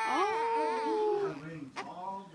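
Infant crying: one long wail, falling slightly in pitch, that breaks off after about a second, followed by a short low whimper and a new cry starting near the end.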